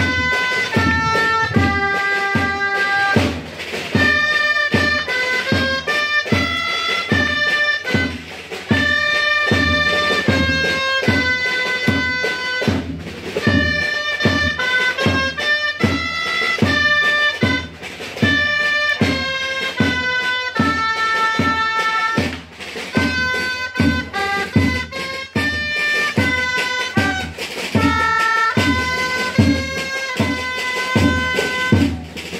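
Folk dance tune played on loud, reedy wind instruments in the manner of Catalan gralles (shawms), with a melody stepping between held notes over a steady drum beat.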